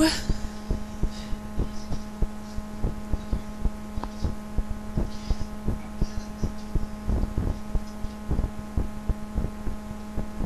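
A steady electrical hum with a buzzing edge, under irregular low thumps that come several times a second.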